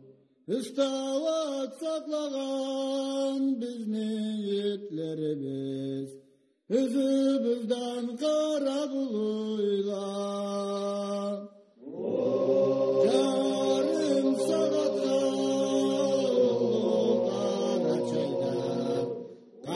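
Chant-like singing of long held notes, in three phrases separated by short breaks about six and twelve seconds in.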